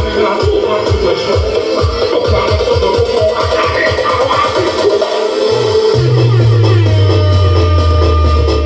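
Electronic dance music played through a large carnival sound-system rig with stacked subwoofers. A kick-drum build-up speeds up, breaks off a little after five seconds, and drops into a long, deep bass note that slides downward.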